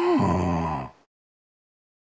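Sasquatch's low vocal wail, rising then falling in pitch and held briefly, cutting off suddenly about a second in.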